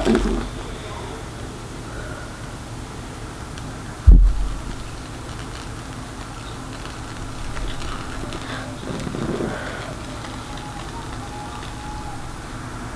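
Quiet room tone, broken by one sudden low thump about four seconds in.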